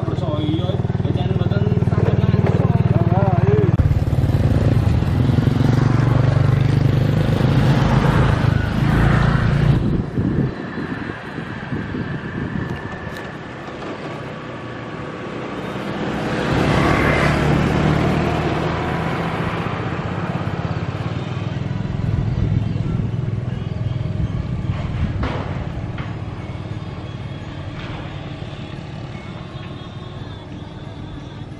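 Road traffic crossing a railway level crossing. A motor vehicle's engine runs loudly for the first ten seconds and then cuts off. A motor scooter passes close by about halfway through, rising and then fading away.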